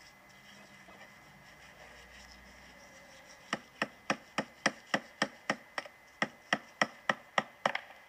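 A run of quick, sharp taps, about three a second, beginning a few seconds in: a steel chisel tapping at a stone casting mold to work its bottom piece loose.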